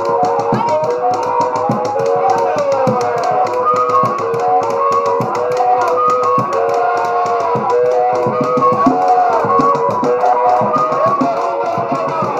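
Dance music with a fast, steady beat and a melody line of held, bending notes over it.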